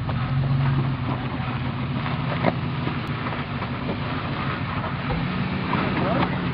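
Pickup truck engine running at low revs as the truck crawls over rocks, rising in pitch about five seconds in as the throttle is opened. A single knock about two and a half seconds in.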